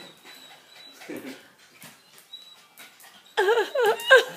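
A dog whining in a high pitch that wavers rapidly up and down, starting loudly near the end, with only faint sounds before it.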